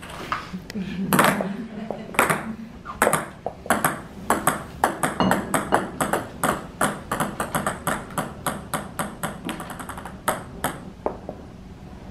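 Small plastic balls, about the size of table-tennis balls, bouncing and clattering on a hard floor: many sharp ticks, each with a high ping, coming fastest about eight to nine seconds in and then thinning out.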